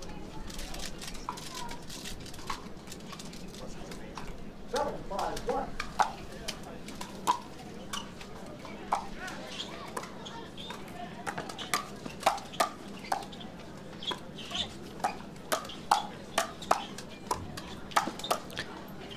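Pickleball rally: paddles popping against the hard plastic ball, with bounces in between, in a long irregular string of sharp knocks about one or two a second, starting about six seconds in, over a low crowd murmur.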